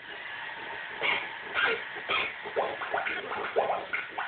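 A baby making short, excited squeals and grunts in quick succession while bouncing on a ride-on toy, with the toy's electronic tune faintly beneath.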